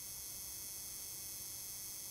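Faint, steady room tone: a low background hiss with a faint hum and thin high-pitched whine lines, and no distinct sound events.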